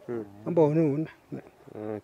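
A man speaking, with a drawn-out, wavering vowel about half a second in.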